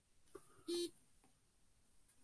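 A single short electronic beep, flat in pitch and lasting about a sixth of a second, just under a second in, with a faint click shortly before it.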